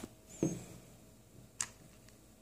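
A mostly quiet room with two brief faint sounds: a short soft knock about half a second in, and a sharp click a little past halfway.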